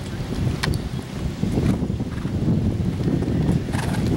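Wind buffeting the microphone: a loud, uneven low rumble, with a few faint sharp clicks.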